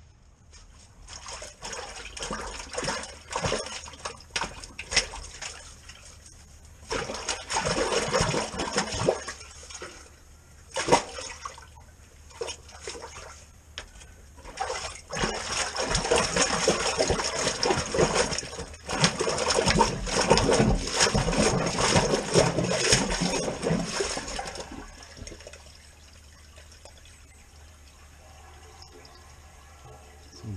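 Water rushing and splashing in a brick drain inspection chamber, in surges that come and go, stopping about 25 seconds in.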